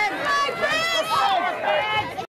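Spectators shouting and cheering, several raised voices overlapping.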